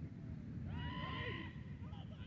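A person's long, high-pitched shout across the field, held for nearly a second in the middle, over low wind rumble on the microphone.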